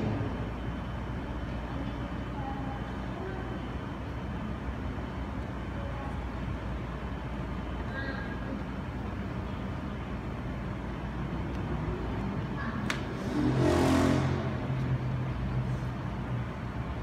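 Steady room tone of a hall with a low hum. About thirteen seconds in, a click is followed by a rush of noise that swells and fades over a second or two.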